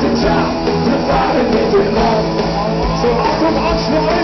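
Live rock band playing loudly, with electric guitars and a male lead singer singing into a microphone over the band.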